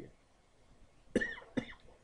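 A man coughing twice, about half a second apart, starting about a second in. He is ill with a cold and flu.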